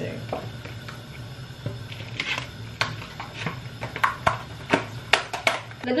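Plastic bag and plastic food tub being handled while raw pork is packed: scattered crinkles and sharp clicks, more frequent in the second half, over a steady low hum.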